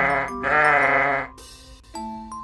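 Sheep bleating: the end of one bleat, then a second wavering bleat of about a second.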